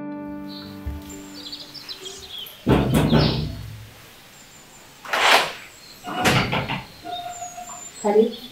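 A held piano chord fades out, then a loud thump comes nearly three seconds in, followed by two short swishing noises, with faint birds chirping.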